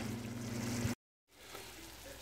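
Butter, onions and sliced deer heart sizzling in a frying pan, a steady hiss with a low hum under it, cut off abruptly about a second in; after a brief silence a fainter hiss returns.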